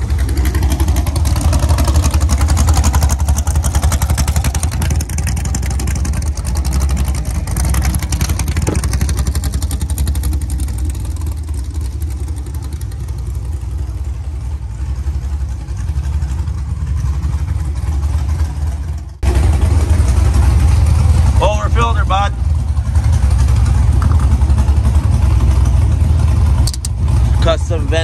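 A car engine idling with a deep, steady rumble. It breaks off briefly about two-thirds of the way through and then carries on the same.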